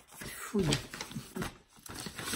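A single short spoken word with a falling pitch, followed by a few light clicks and faint voice sounds.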